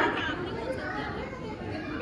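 Crowd of women chatting in a large hall, many voices overlapping, with no single speaker standing out.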